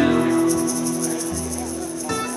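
Bluegrass band of acoustic guitar, mandolin and upright bass playing a held passage between sung lines, with a fast, even flutter high in the sound. A fresh strum comes in at the very end.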